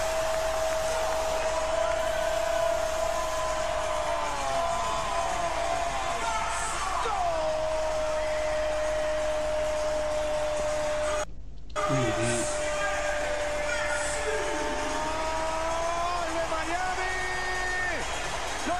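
A long drawn-out goal shout held on one note for about eleven seconds, breaking off briefly and then held again for a few more seconds, over a steady stadium crowd roar.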